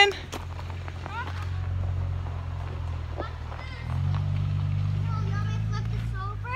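A truck's engine running on the trail: a steady low hum that grows louder about four seconds in as it comes closer.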